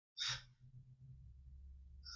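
A short breath, a sigh-like puff of air about a quarter second in, followed by a faint low hum.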